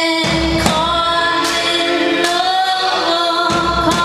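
Live pop song: a woman singing the lead into a microphone with a man singing backing vocals, over sustained accompaniment and a regular beat that falls about every three-quarters of a second.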